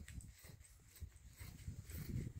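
Faint, scattered snips of large tailor's scissors cutting through dress fabric laid on the floor.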